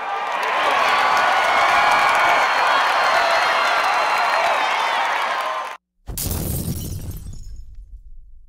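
Sound-effect intro: a steady roar of stadium crowd noise that cuts off sharply after nearly six seconds, then, after a moment of silence, a loud crash with shattering that dies away over about two seconds.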